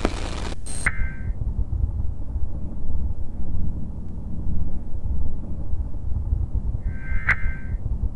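Analog-style low rumbling noise that flutters steadily, after a brief burst of static hiss at the start. A short ringing electronic blip sounds about a second in and again near the end.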